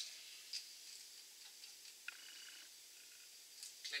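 Near silence with a few faint, scattered ticks: a worm-drive hose clamp being tightened with a hex nut driver onto a vinyl hose at a plastic bucket spigot.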